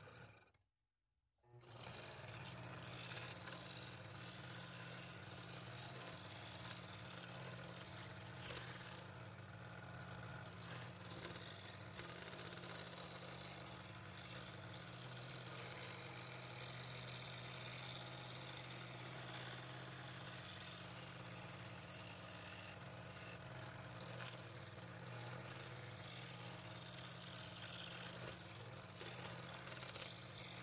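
Scroll saw running steadily with a low motor hum, its reciprocating blade cutting fretwork in 3/8-inch walnut. The sound comes in about two seconds in and stays even after that.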